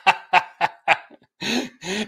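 A man laughing heartily in a run of short 'ha' bursts, about four a second, that breaks off about a second in, followed by a breathy gasp.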